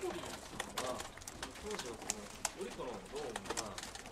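Repeated sharp camera shutter clicks, several a second and irregular, over a man's faint off-microphone question.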